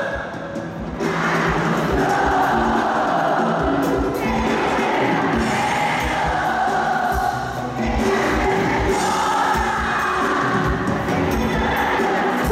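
Live bachata band playing, with congas, drums and guitar under sung vocals, and a crowd's voices mixed in.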